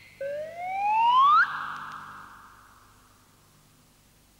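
A comic whistle-like sound effect: one pitch glide rising steadily for about a second, which cuts off abruptly and leaves a short echoing tail that fades away.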